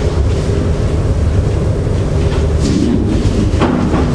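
Steady low rumble of lecture-hall room noise, with a faint voice in the second half.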